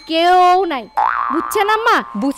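A woman's voice drawing out one word with a wobbling pitch, followed by more talk.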